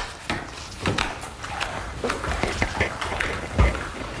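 Clicking, clattering and rustling of plastic doll parts being handled and put together, with a louder knock about three and a half seconds in.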